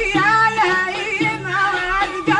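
A woman singing a Middle Eastern folk song, holding long, wavering, ornamented notes over instrumental accompaniment.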